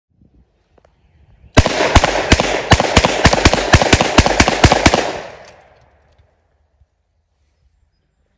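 Two .357 Magnum revolvers, a Smith & Wesson 586 and a 686 Plus with 6-inch barrels, fired alternately in a rapid string of a dozen or so hot handloaded shots, about three to four a second. The shots start about a second and a half in and stop about five seconds in, with echo trailing off after.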